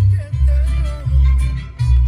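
Music with a heavy bass line playing loud on a Toyota Tacoma's stereo, its volume being turned up from the steering-wheel control.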